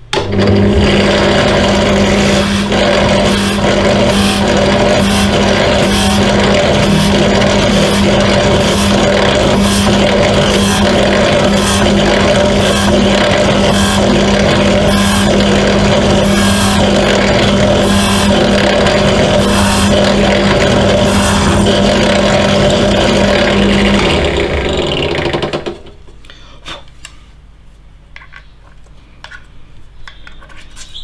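Pedestal drill press running, its bit cutting through the propeller hub with a scratchy cut that repeats about once a second as the bit is fed in and backed out to clear the flutes. About 24 seconds in the motor is switched off and winds down over a second or so, followed by light clicks of handling.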